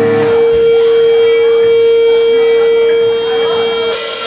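An amplified electric guitar holding one steady, loud, ringing tone for about four seconds, with a sharp hit just before the end.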